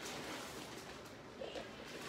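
Faint sipping of water through a straw from a cup.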